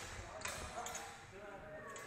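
Steel training swords striking with one sharp clack about half a second in, in an echoing sports hall.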